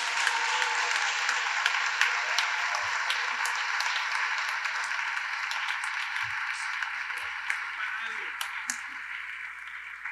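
Audience applauding, a dense patter of many hands clapping that slowly dies down.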